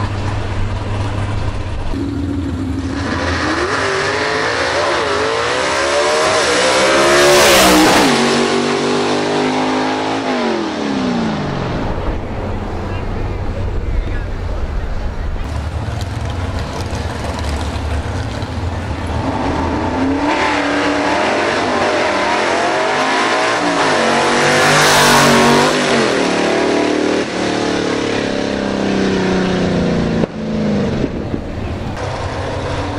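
Two gasser drag cars making hard launches one after the other. Each time the engine note climbs steeply in pitch under full throttle to a loud peak, then falls away as the car pulls down the track. Between the two runs a lower engine rumble idles on.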